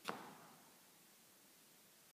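Handling noise from a handheld camera brought against clothing: one short bump about a tenth of a second in, fading over about half a second, then near silence.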